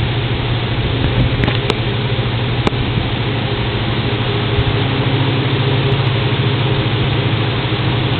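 Loud, steady machinery noise with a low hum, with two brief clicks about two to three seconds in.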